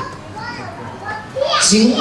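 A man preaching into a handheld microphone pauses for about a second and a half, when a child's voice is heard faintly, then resumes speaking loudly.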